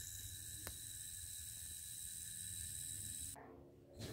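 Faint steady hiss with a thin high whine from a polycarbonate-and-aluminium hybrid yo-yo sleeping on its string during a spin test, its bearing and string turning. One faint click comes about two-thirds of a second in, and the sound cuts off shortly before the end.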